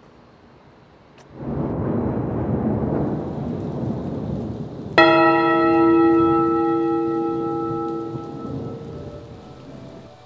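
Rain with a low thunder rumble, then about halfway a single bell-like chime struck once, ringing out and slowly fading.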